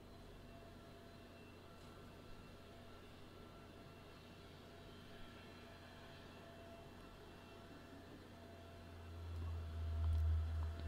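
Near silence: faint room tone with a steady low hum. A low rumble swells up about nine seconds in.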